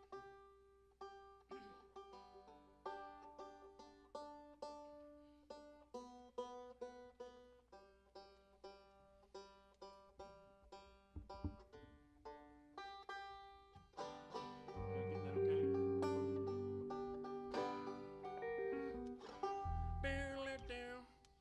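Soft playing on plucked string instruments, single picked notes about two a second, with low bass notes and louder held notes coming in about fifteen seconds in.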